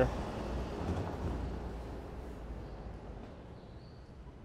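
City street ambience: a broad noise of traffic that fades away steadily over a few seconds.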